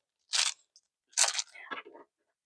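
Clear plastic bag of diamond-painting drill packets crinkling as it is handled: two short crinkles about a second apart, then fainter rustling.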